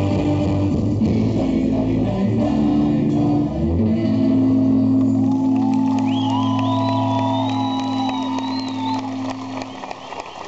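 Live rock band with acoustic and electric guitars and drums ending a song: the full band plays, then holds a final chord for about six seconds until it stops near the end, with voices calling out over it.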